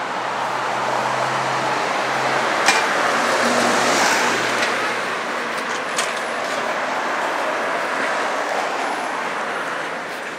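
Urban street traffic: a passing vehicle's engine and tyres swell up to a peak about four seconds in and then ease off, over a steady traffic hum. Two sharp clicks stand out, one under three seconds in and one about six seconds in.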